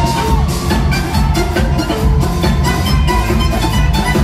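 Live pop band playing loudly, with a steady drum beat under electric guitars, bass and keyboards, recorded from among the audience.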